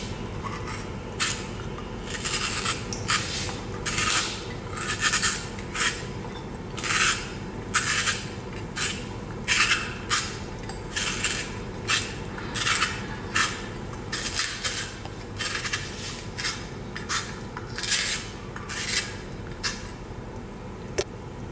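Carrot being twisted through a hand-held stainless steel spiral slicer, its blade shaving the carrot into spirals. The cutting comes as a steady run of short scraping strokes, a little more than one a second.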